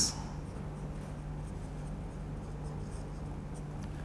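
Faint scratching of a pen writing on paper in short strokes, over a steady low hum.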